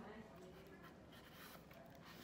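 Near silence: quiet room tone with faint, distant voices.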